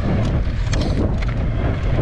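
Wind buffeting the microphone of a handlebar-mounted camera on a mountain bike riding a gravel dirt track, a heavy steady rumble. A few sharp clicks and rattles from the bike jolting over stones.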